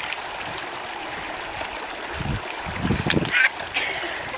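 Shallow stream running over stones, with a few footsteps crunching on gravel and thudding onto a rock between about two and three and a half seconds in.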